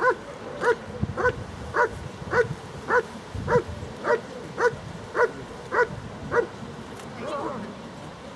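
German Shepherd Dog barking steadily at a protection helper holding a bite sleeve, the guarding bark of the hold-and-bark exercise: about a dozen even barks, a little under two a second, stopping about six and a half seconds in.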